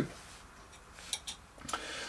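Quiet room tone broken by a few faint, short clicks a little after a second in, from small model parts and tools being handled on a hobby workbench.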